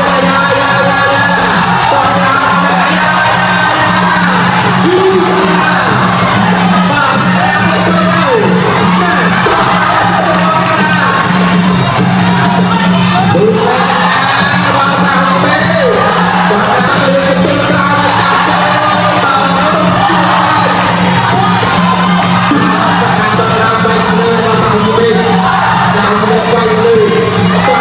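Traditional Khmer boxing ring music plays steadily throughout: a wavering wind melody over drums and a steady low drone. Crowd shouts and cheering sound over it.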